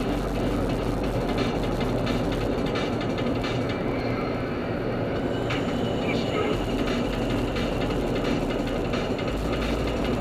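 Steady road noise inside a car cabin at freeway speed: tyre and wind noise over a low rumble from the car.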